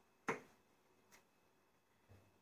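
A sharp click of a small kitchen utensil knocking on a hard surface about a quarter second in, then a fainter click a little after a second.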